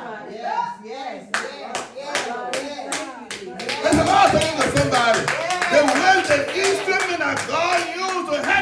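Hand clapping in a steady beat, about two to three claps a second, with voices calling out over it in praise.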